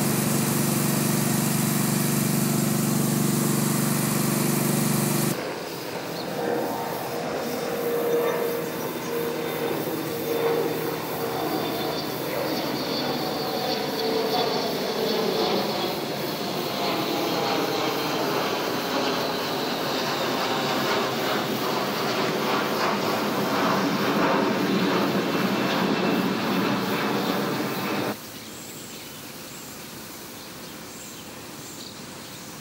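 Loud vehicle noise in two cut segments. A steady low drone with hiss cuts off abruptly about five seconds in. A second vehicle sound with shifting pitch follows and cuts off abruptly near the end.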